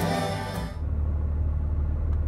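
Live band music from a concert hall cuts off abruptly under a second in. It gives way to the steady low rumble of a vehicle heard from inside its cab while driving.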